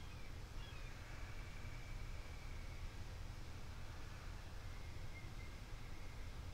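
Quiet outdoor background with a steady low hum and a faint thin high whistling tone. The tone dips slightly in pitch as it starts, holds for about two seconds, and comes back briefly near the end.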